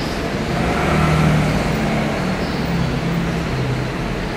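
Low, steady rumble of road traffic, a motor vehicle's engine running.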